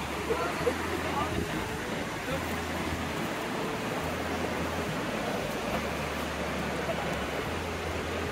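Steady rushing of the Urubamba River's white-water rapids, a continuous even roar of water over rocks.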